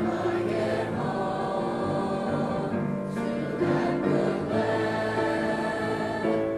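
Junior high school mixed choir singing, held chords moving from note to note at a steady level.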